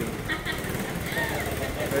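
Bajaj Platina motorcycle's single-cylinder four-stroke engine running steadily with an even low chug.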